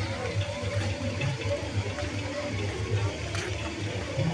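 Illuminated tiered fountain's water splashing steadily, mixed with background chatter of people.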